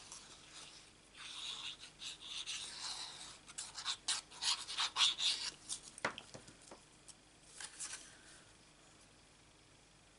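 Scratchy rubbing of a liquid glue bottle's nozzle being drawn across cardstock and of card pieces being handled, densest around the middle, with a sharp tap about six seconds in. It quietens to room tone near the end.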